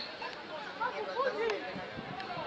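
Several people's voices talking and calling out over one another, with one sharp knock about a second and a half in.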